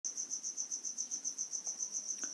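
A high-pitched insect chirping steadily in even pulses, about seven or eight a second, with no break.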